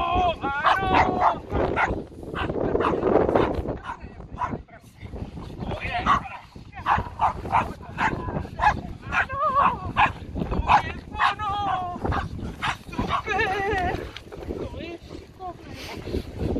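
A five-and-a-half-month-old puppy barking and yipping in quick, repeated short bursts, excited while being worked with a bite rag in bite training.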